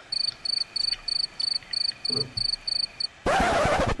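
Cricket chirping sound effect, high even chirps about three a second, the comedic 'awkward silence' gag; it stops about three seconds in and a loud burst of hiss-like noise follows.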